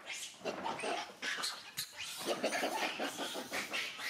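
Animal cries, a run of rough, harsh calls in quick succession throughout.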